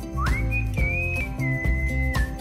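Background music: a whistled melody over a steady beat of about two beats a second and a bass line. The melody glides sharply upward about a quarter second in, then holds high notes and settles on a long steady note near the end.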